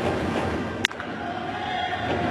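A baseball bat hits a pitched ball once with a sharp crack, about a second in, over the steady noise of a stadium crowd.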